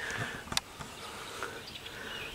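Quiet outdoor background with faint insect and bird sounds, broken by a single sharp click about a quarter of the way in.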